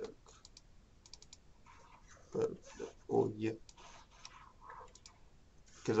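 A computer keyboard and mouse clicking in a few short, scattered clusters of keystrokes and clicks.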